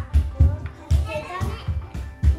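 Young children talking over background music with a steady beat.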